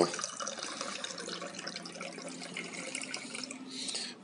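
Orange juice running from the metal tap of a Kilner glass drink dispenser into a small glass, a steady trickle.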